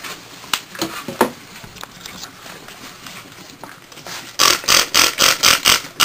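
A few light knocks, then from about four and a half seconds in a quick run of scraping strokes, about four a second, as a utensil stirs scrambled egg in a frying pan.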